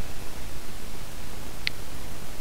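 Steady hiss and low hum of an open microphone between phrases of narration, with one brief faint tick near the end.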